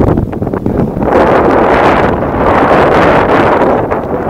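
Wind buffeting the microphone, with a loud, steady rushing noise from about a second in.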